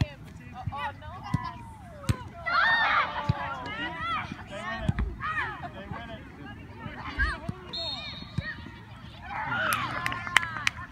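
Several voices shouting across an outdoor soccer field, with a burst of many voices at once about two and a half seconds in and another near the end, and sharp knocks scattered through.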